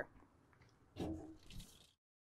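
Faint, brief handling noise about a second in, with a fainter one just after, as a heavy generator power cable is picked up and fed through a trap door.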